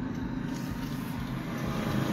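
Steady low background rumble with an even hiss over it, with no distinct events.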